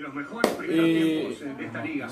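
A man's voice talking, with one sharp click or slap about half a second in.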